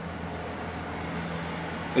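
Steady low background rumble and hum with no distinct event.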